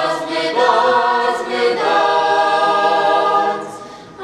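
A small choir of young male voices singing unaccompanied in harmony: a few short phrases, then a long held chord that fades out just before the end.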